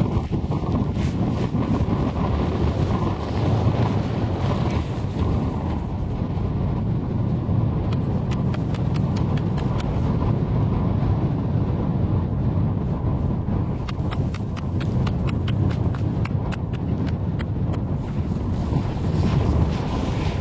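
An axe chopping at lake ice: a long run of sharp, repeated strikes, most of them after the first few seconds, over a steady rumble of wind on the microphone.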